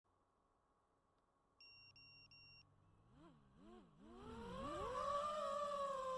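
Small FPV quadcopter on the ground: three short electronic beeps, then its brushless motors spin up with a few quick throttle blips, the pitch rising and falling. The motors then climb to a steady, louder whine as the drone lifts off.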